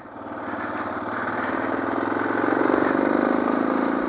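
Suzuki DR650 single-cylinder four-stroke engine under way, its note building and growing steadily louder over the first few seconds, then holding.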